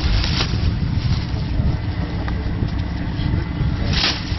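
A steady low rumble with a few faint clicks and a sharper click at the end.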